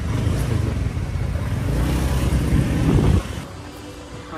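Motorcycle taxi under way: engine and road noise, a steady rumble that grows louder and then cuts off abruptly about three seconds in.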